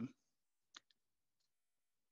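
Near silence with one faint, short click a little under a second in, the click of a computer input advancing the presentation slide.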